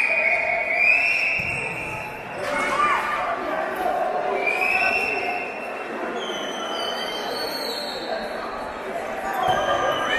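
Indoor futsal match: spectators talking and calling out in an echoing gymnasium, with several high squeaks of players' shoes on the court and a few sharp knocks of the ball.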